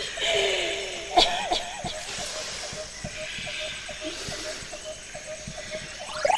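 A person's voice sounding briefly, cut by a sharp click about a second in, then a faint steady series of short high pips, several a second.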